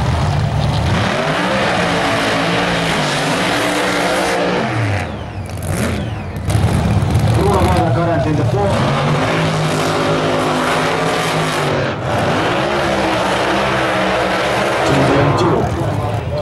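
Drag racing car engines running loud near the starting line, the revs rising and falling several times, with a sudden louder surge about six and a half seconds in.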